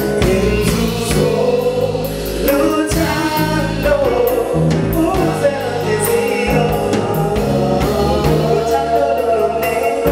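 Live soul band playing: a male lead singer and female backing vocalists over bass guitar, drums and a Roland stage piano.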